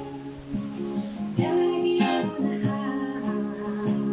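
A folk band playing an instrumental passage recorded live on tape: acoustic guitar strummed, with held pitched notes ringing over it, a few strums standing out.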